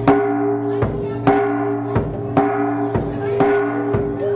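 Bossed gongs struck with padded mallets in a steady beat of about two strikes a second, each strike ringing on under the next.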